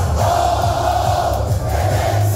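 Live Schlager party music with a heavy, steady bass beat, and a packed crowd shouting and singing along in one held, loud chant.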